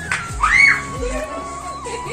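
Background music with people's and children's voices at play; a short high cry rises and falls about half a second in.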